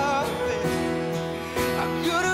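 Male singer with a strummed acoustic guitar in a live pop ballad. A wavering sung note opens, then sustained guitar chords carry on with a few strums.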